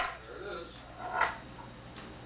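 Two short knocks of a plastic cup handled on a small wooden tabletop: a sharp click at the very start, then a softer clunk about a second later.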